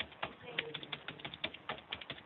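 Computer keyboard typing: a quick, irregular run of key clicks, several a second, as a web address is typed in.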